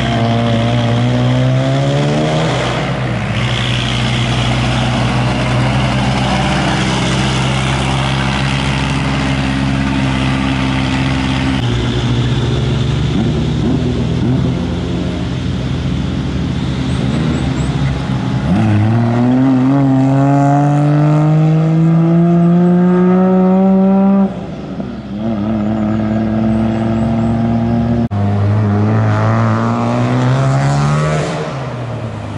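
Motor vehicle engines driving past in a series of clips joined by abrupt cuts, each engine's pitch climbing as it accelerates and then holding. Past the middle, one engine rises steadily for about five seconds before it breaks off suddenly.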